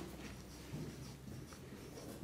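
Faint scratching of a dry-erase marker on a whiteboard, drawing short scribbled strokes.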